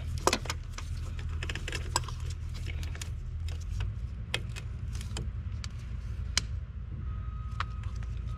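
Pliers clicking and clinking on a heater hose clamp and the metal fittings around it: scattered sharp metallic ticks over a steady low hum.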